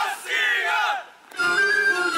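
A group of male folk dancers shouting together in two loud calls. After a short pause, Bulgarian folk music with steady held tones starts about one and a half seconds in.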